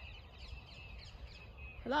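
Faint birdsong, thin warbling calls, over a low rumble of outdoor background noise.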